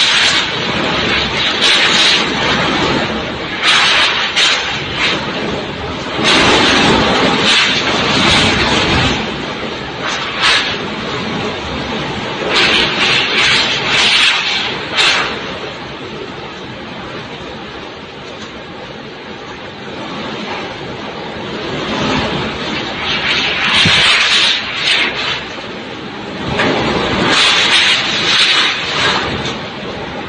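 Super typhoon winds blowing hard against the microphone, coming in loud gusts every few seconds with a calmer lull in the middle.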